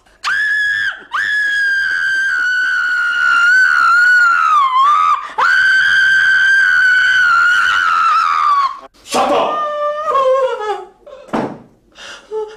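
A woman screaming in pain, three long high screams in a row, as a lighter flame is held to her hand, then shorter falling cries near the end.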